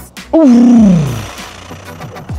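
A man's loud, rough "oof" shout, about a second long and falling steadily in pitch, given like a growl or roar.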